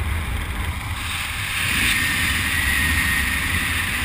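Wind buffeting a body-worn camera's microphone during parachute canopy flight: a steady low rumble with a rushing hiss that grows slightly louder about halfway through.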